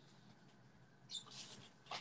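Near silence with a few faint, brief rustles about a second in and again near the end.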